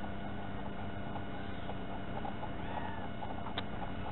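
Steady low hiss with a faint constant hum, the background noise of a small onboard camera's recording, and one sharp click about three and a half seconds in.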